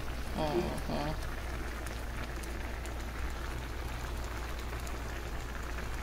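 Shrimp cooking in bubbling melted butter in a skillet, a steady fine crackling sizzle. A short voice sounds just under a second in.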